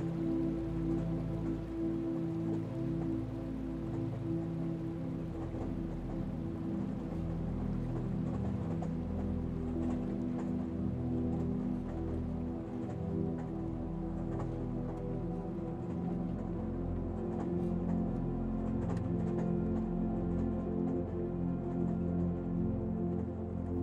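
Calm ambient background music with sustained low tones, over a faint even hiss with light scattered patter.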